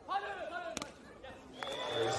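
A short shout rings out over the crowd at the beach volleyball match, followed just under a second in by a single sharp slap of a hand hitting the volleyball. A steady high tone starts near the end.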